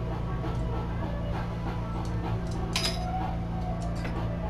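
Clear glass rods clicking and clinking as they are handled and snapped to length, with one sharp crack about three seconds in, over a steady low hum.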